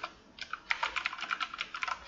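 Computer keyboard typing: a quick run of key clicks, about ten a second, starting about half a second in.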